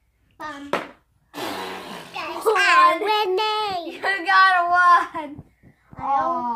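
Children's voices, high-pitched and calling out, with no clear words.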